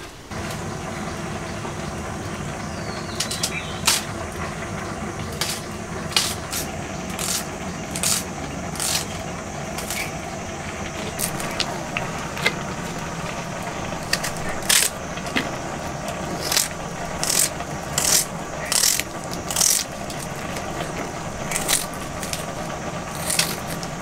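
Onions being sliced against an upright iron floor blade (a Nepali chulesi): a series of short, crisp cutting strokes, scattered at first and coming steadily about one a second in the second half, over a steady low hum.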